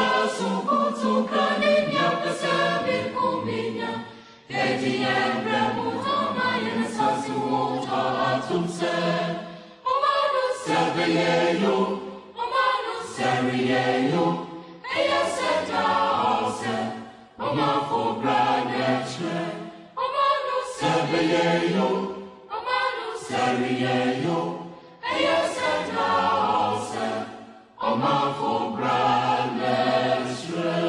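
Background music of a choir singing, in short phrases with brief pauses every two to three seconds.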